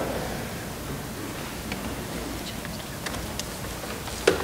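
Quiet room noise in a church sanctuary, with faint rustling and a few soft clicks as people move and change places.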